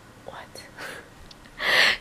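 A woman's soft, whispery "What?", then near the end a short, loud breathy rush of air, an exhale or breathy laugh.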